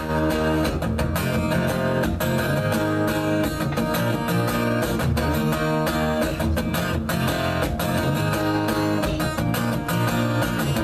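Acoustic guitar strummed in a steady rhythm of chords: the instrumental intro of a live solo song, before the vocal comes in.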